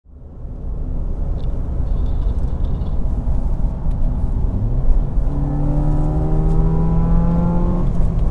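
Ford Fiesta ST's turbocharged 1.6-litre four-cylinder heard from inside the cabin at road speed, over steady road rumble, fading in at the start. A little past halfway the engine note rises quickly, then keeps climbing slowly as the car accelerates.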